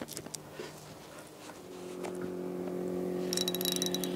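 Spinning reel being wound on a hooked fish, giving a fast run of sharp clicks near the end. Under it, a steady motor hum comes in about halfway through and grows louder.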